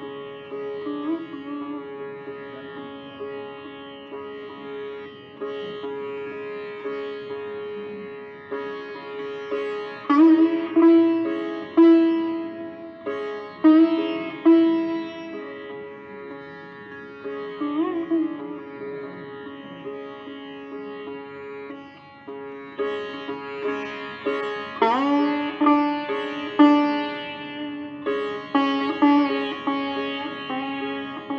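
Sitar playing raga Bhairavi solo: plucked melody notes, several bent upward in pitch by pulling the string, over a steady ringing drone. The phrases grow louder about ten seconds in and again from about 24 seconds.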